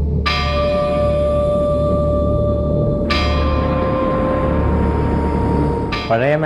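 Dramatic background music: a bell tolls twice, about three seconds apart, each strike ringing on over a steady low drone.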